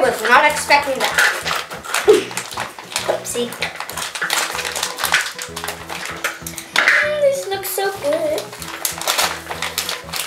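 Small clicks and clatter of Milk Duds candies shaken from their cardboard box into a clear plastic bowl, with a spoon knocking in a second plastic bowl, over background music.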